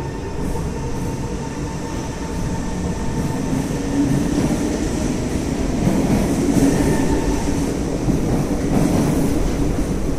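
SMRT Kawasaki C151 metro train pulling out along the platform: motor hum and wheels running on the rails, with a short rising tone near the start, getting louder from about four seconds in.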